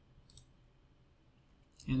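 A single computer mouse button click, a quick press-and-release pair, about a third of a second in, over quiet room tone.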